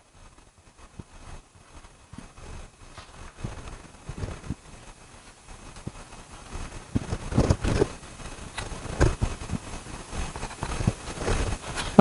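Pastel stick dabbed and stroked onto paper on an easel board: irregular light taps and scrapes, growing louder and more frequent in the second half.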